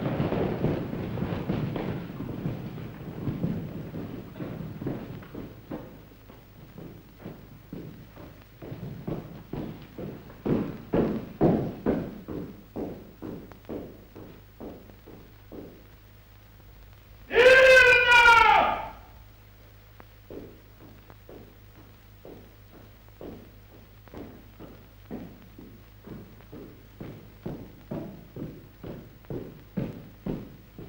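Many soldiers' boots tramping and shuffling on a hall floor as they form up, settling into separate footfalls. About halfway through comes one loud, drawn-out shouted call. After it, measured footsteps of a single person walk on the hard floor over a low steady film-soundtrack hum.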